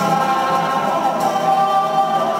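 Church choir singing a hymn, the voices holding long notes.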